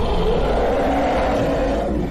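A steady roar from a film trailer's sound effects, lasting about two seconds.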